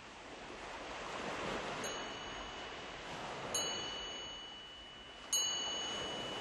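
Opening of a recorded song: a soft wash of noise like surf, with three ringing chime strikes evenly spaced about 1.7 seconds apart.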